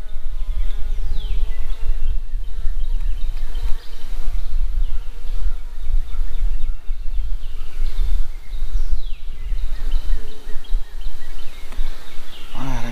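Honey bees buzzing around an open nucleus hive whose frames are being handled, under a loud, fluctuating low rumble.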